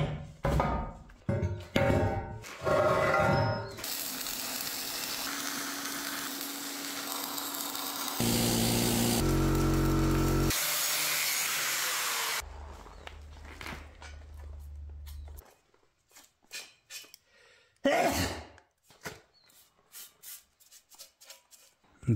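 Angle grinder running for several seconds on the steel of a homemade hitch adapter, followed by a low hum and scattered metal knocks and clatter, with background music.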